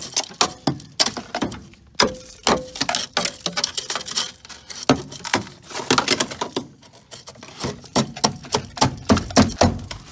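Car kick panel being pulled out of a rust-rotted footwell, with many irregular sharp cracks, crunches and rattles as brittle trim and rust break away.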